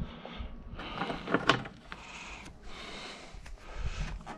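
A few light clicks and a faint rustle of small metal parts being handled: the cover of a Monosem seed-metering unit and its bolt, being refitted after a seed-plate change.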